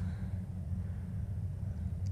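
A steady low rumble in the background of a film soundtrack, with nothing else standing out above it.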